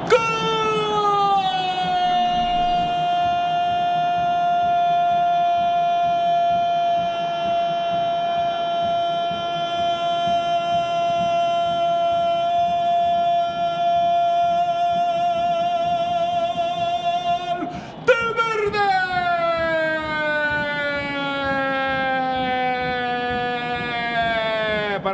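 A Spanish-language football commentator's drawn-out goal cry, 'gol' held on one loud note for about seventeen seconds and wavering near its end. After a quick breath, a second long cry follows that slowly falls in pitch.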